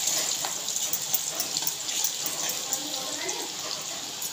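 Sliced onions frying in hot mustard oil in an iron kadai: a steady sizzling hiss with scattered crackles.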